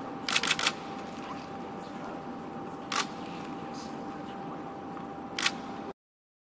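Camera shutters clicking over steady room noise: a quick run of about four clicks just after the start, then single clicks about three seconds in and near the end.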